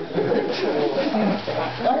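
A person's voice making low, wavering wordless sounds.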